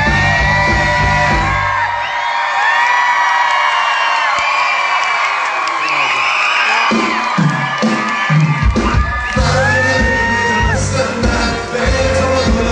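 Live pop music from a concert sound system, recorded from the audience, with the crowd whooping and cheering. The bass drops away about two seconds in, leaving the higher parts, and comes back in hard near nine seconds.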